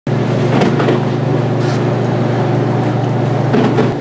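A loud, steady low mechanical hum with faint voices in the background.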